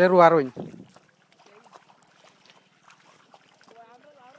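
A man's voice trails off in the first half second. Then come faint, scattered small splashes and ticks of hands pushing rice seedlings into a flooded, muddy paddy. A faint distant voice comes in near the end.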